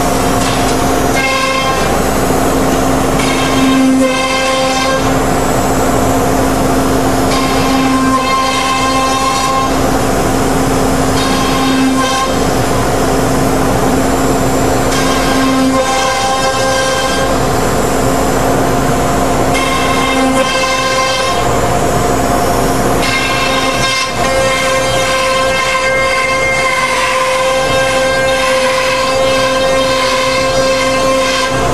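CNC router spindle running at high speed while the cutter routes grooves into a sheet on the table: a steady high whine made of several pitched tones that come and go every few seconds as the cut and the load change, over a constant low hum.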